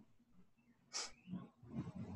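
A mostly quiet pause on a video-call line, broken about a second in by one short breathy hiss, like a sharp intake of breath, with a few faint low sounds after it.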